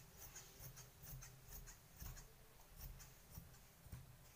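Large tailoring scissors cutting through a blouse piece and its lining, with faint repeated snips at about two to three a second as the blades close through the cloth.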